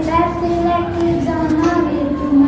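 A schoolgirl singing solo, holding long steady notes with short slides in pitch between them.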